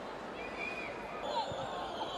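Football stadium ambience from a match broadcast: steady field and crowd noise with faint distant shouts, and a dull thud of the ball being kicked a little past the middle.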